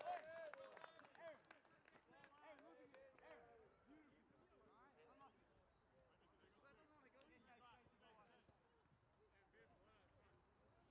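Faint distant voices of players and onlookers calling out across an outdoor football pitch, loudest in about the first second and fading to scattered murmurs, with a few light ticks.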